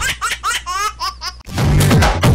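A laughter sound effect in a title jingle: a quick run of high 'ha-ha' syllables over a low steady drone. About a second and a half in it cuts to upbeat electronic music with a heavy beat.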